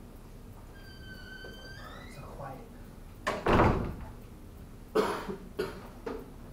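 A short high-pitched squeak, then a loud cough about three seconds in, followed by two shorter vocal sounds near the end.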